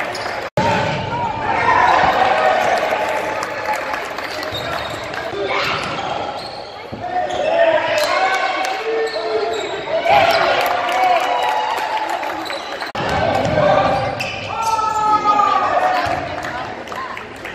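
Basketball game sounds in a gym: the ball bouncing on the court amid indistinct shouting from players and spectators.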